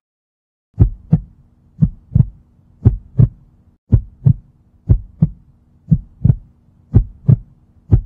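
Heartbeat sound effect: pairs of low lub-dub thumps about once a second, starting about a second in, over a faint steady low hum.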